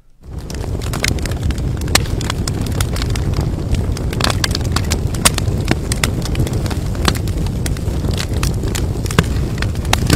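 Fire sound effect: a low roar of flames with many sharp crackles and pops, fading in just after the start and then running steadily.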